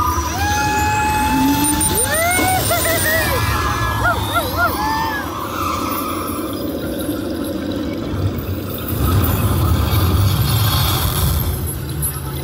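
Test Track ride vehicle running along its track with a steady low rumble, growing louder about nine seconds in. High electronic tones and wavering whoops sound over it in the first few seconds.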